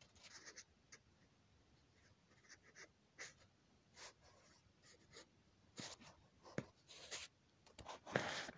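Faint, intermittent scratching and scuffling of a baby skunk's paws and snout on gravelly dirt as it forages, with the sharper scrapes coming in the second half.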